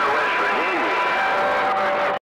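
Distorted, unintelligible voices coming in over a CB radio from distant stations, against a steady bed of static hiss. Thin steady whistling tones from interfering signals sound under the voices, one about halfway through and another from past the middle to the end.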